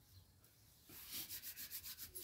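Hands rubbed briskly together, palm on palm: a faint, quick run of rubbing strokes starting about a second in.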